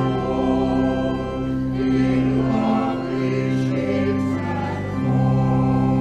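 Organ playing held chords with a choir singing, the chords changing every second or so.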